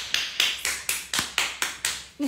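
Hand claps in a quick, even run, about four sharp claps a second, stopping near the end.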